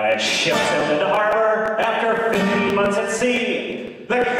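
Male voices singing the opening lines of a comic sea shanty-style song, with an acoustic guitar strummed in a steady rhythm.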